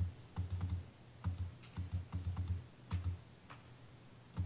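Laptop keys being tapped at a lectern, picked up by the lectern microphone as a string of irregular dull taps with faint clicks.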